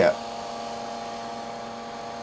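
Steady hum and fan noise from a Palomar 300A tube linear amplifier that is switched on and idling, with its upgraded high-airflow cooling fan running.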